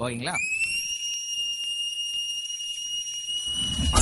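A single long whistle: it slides up briefly at the start, then holds one steady high note for about three and a half seconds.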